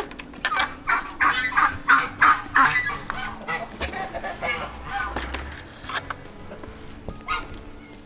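Farm poultry calling: a quick run of short, repeated calls in the first few seconds, thinning out to scattered single calls.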